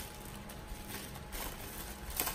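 Faint rustling and light clicks of a power cord and its plastic wrapping being handled as the cord is untangled.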